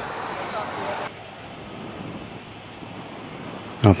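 Outdoor ambience: faint insects chirping in an even, repeating rhythm over a soft hiss of open-air noise that drops in level about a second in.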